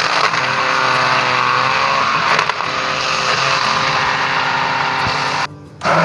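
Electric hand blender running steadily in a plastic cup, blending peaches with ice and water into juice. It cuts off about five and a half seconds in and starts again just before the end.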